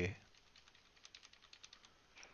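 A quick run of about a dozen faint clicks from computer keys, starting about a second in, as the video in the editing software is stepped through a frame at a time.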